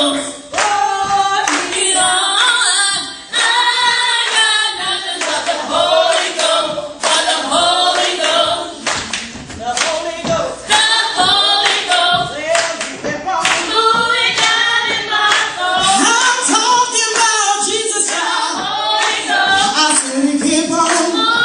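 A woman leads a gospel song through a microphone, with other voices joining in and the congregation clapping in a steady rhythm, about once a second.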